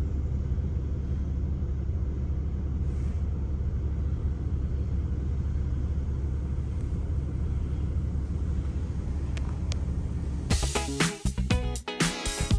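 Steady low rumble of a vehicle driving slowly, heard from inside its cabin. About ten and a half seconds in, rhythmic music takes over.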